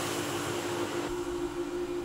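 A steady low hum under a faint hiss; the hiss thins about a second in.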